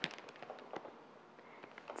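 A plastic bag of 3 to 6 mm orchid bark crinkling and the fine bark pieces rattling as a handful is scooped out: a few faint crackles and clicks, mostly in the first second.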